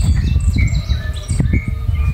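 Small birds chirping: many short, high calls overlapping throughout, over a loud, uneven low rumble.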